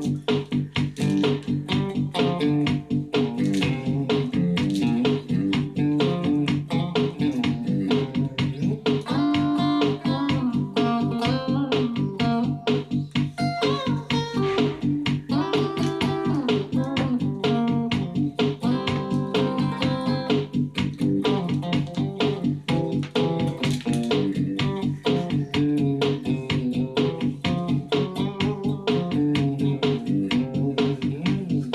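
Electric guitar, a Stratocaster-style, playing an improvised lead solo of single notes and bends over a backing track with a steady fast beat and bass line.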